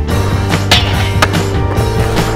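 Rock music playing with skateboard sounds over it: urethane wheels rolling on concrete and two sharp clacks, one under a second in and one a little after.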